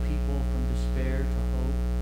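Steady electrical mains hum in the sound system: a low buzz with a stack of evenly spaced overtones, louder than anything else. Faint, murmured words sit under it for about the first second and a half.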